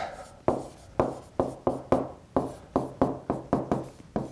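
A stylus tapping on a tablet screen as words are handwritten, one tap each time the pen touches down for a stroke. The taps come in an irregular run, a few each second.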